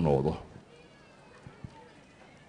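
A man's voice over a microphone trails off on a drawn-out syllable with falling pitch in the first half second, then a pause with faint room tone and two small clicks.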